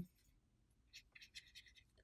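Near silence: room tone, with a few faint, light scratches about a second in from a small paintbrush on a plastic palette.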